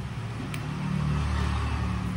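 Low, steady motor rumble that grows louder about halfway through.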